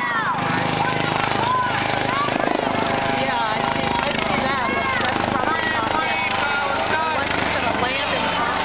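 Many people talking at once, with no single voice clear, over the steady drone of a helicopter flying overhead.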